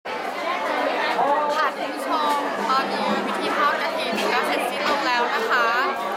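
People talking: continuous speech and chatter, with a faint steady hum underneath from about two and a half seconds in.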